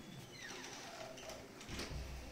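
Quiet room tone with a few faint clicks and a brief low thump near the end.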